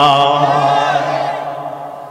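A man's amplified voice holding one long chanted note with vibrato, in the melodic sung delivery of a Bangla waz sermon, fading away toward the end.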